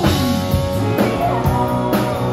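A live rock band playing: a woman singing, with electric guitar and a drum kit keeping a beat of about two hits a second. The voice slides down in pitch at the start, then holds.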